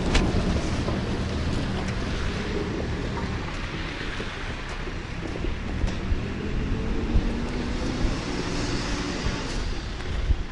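A backhoe loader's engine running steadily, with faint light steps on slushy snow.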